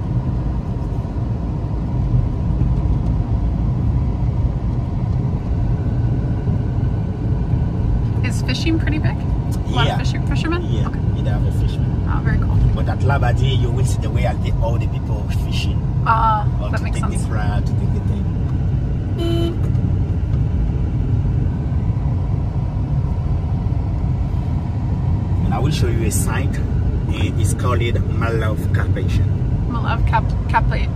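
Car cabin noise: the steady low rumble of the engine and tyres as the car drives along, with a brief horn toot about two-thirds of the way through.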